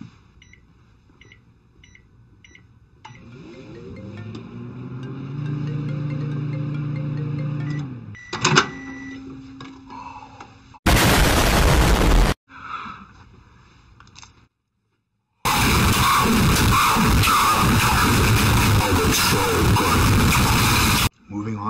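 Microwave oven being run: a few keypad beeps, then its hum rises and holds steady for a few seconds before a click and a short beep. About eleven seconds in comes a sudden, very loud blast of harsh noise, and from about fifteen seconds a long, loud stretch of distorted noise with music.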